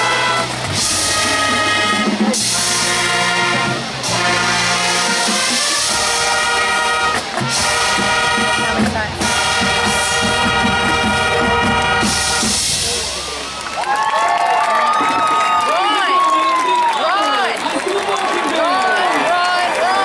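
Marching band brass and drums playing loud sustained chords over a steady beat, the music ending about two-thirds of the way through. Then a crowd cheering, with whoops and yells.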